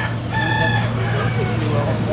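A rooster crowing once: a held, high, pitched call that trails off lower about a second in.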